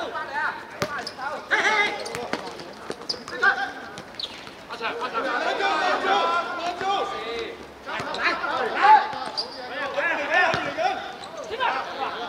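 Football players shouting to each other across a hard-surface pitch, with a few sharp thuds of the ball being kicked or bouncing on the court.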